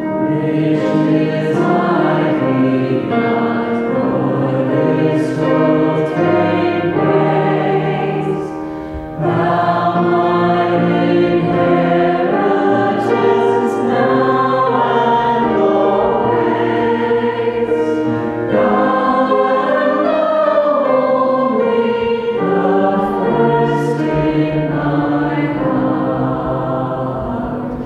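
Congregation singing a hymn with a woman's voice leading. The phrases are long and held, with a short break for breath about nine seconds in.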